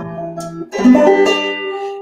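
Banjo in an F tuning being plucked: a soft note at the start, then a chord struck a little under a second in and left ringing.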